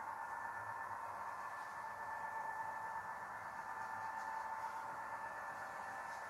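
Model diesel locomotives running on a layout: a steady, even hum with a few fixed tones that holds without change.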